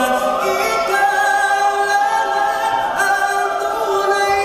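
Mixed choir of men's and women's voices singing, holding long chords that change a few times.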